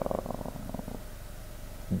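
A man's drawn-out hesitation sound 'euh' trailing off into a creaky, rattling vocal fry that fades over about a second, then quiet room tone until speech resumes near the end.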